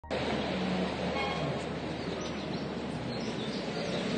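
Steady outdoor background noise, an even rush with no distinct event standing out.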